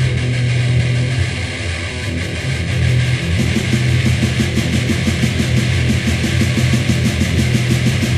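Crust punk band playing an instrumental passage: heavily distorted guitars and bass over drums, the drums picking up into a fast, driving beat about three seconds in.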